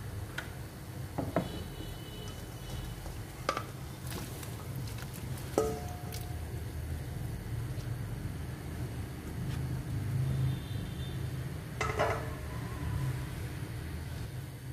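Salmon head pieces being put into a large aluminium pan of boiling sour-soup broth, a utensil knocking sharply against the pan about half a dozen times, some knocks ringing briefly, over the low steady rumble of the boiling pot.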